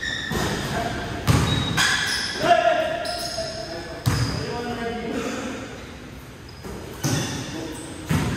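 A basketball thudding on an indoor court several times, each thud echoing in the large hall, with players' voices calling out during play.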